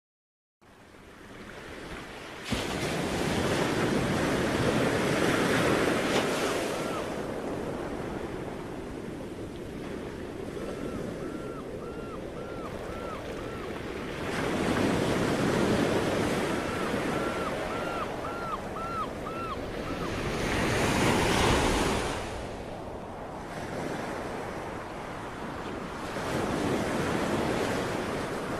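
Sea waves surging and washing in slow swells, rising and falling every few seconds, with wind. Twice a short run of quick repeated chirps sounds over the surf.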